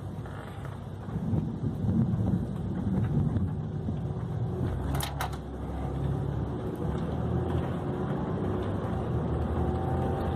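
Car engine and tyre noise heard from inside the cabin as the car pulls away from a stop, a low rumble that swells about a second in and stays steady. A short sharp click sounds about five seconds in.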